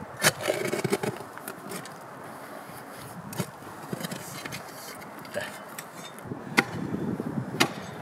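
Hand digging in dry, forest-floor soil: a long wooden-handled digging tool scraping into the dirt, with several sharp knocks as it strikes the ground.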